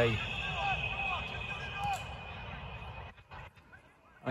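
Football match ambience: short, distant shouts from players on the pitch over a steady outdoor hiss. The shouts come in the first two seconds, then the sound grows fainter.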